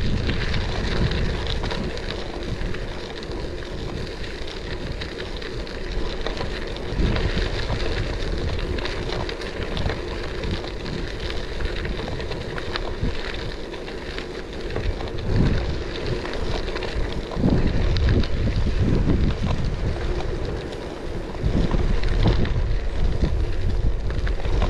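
Wind buffeting the microphone of a moving bicycle, surging in low gusts, over a steady rush of tyres rolling on a fine gravel path. The gusts grow stronger in the second half.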